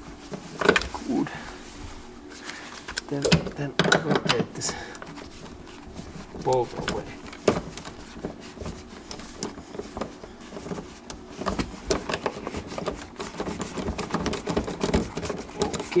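Irregular clicks and knocks of a socket, extension and ratchet on a seat-rail bolt as it is worked loose, with many short clicks in the second half.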